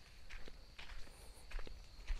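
Faint footsteps on a dirt track at an even walking pace.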